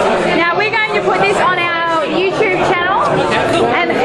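Several people talking at once, indistinct overlapping chatter of a small group in a room.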